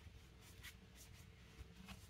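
Near silence, with faint rustling of paper envelopes being handled.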